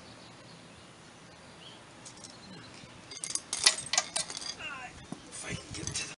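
Several short, sharp metallic clinks and clicks, about three seconds in and again near the end, from an air chuck and hose fitting being worked at a truck tire's valve stem while the tire is aired up.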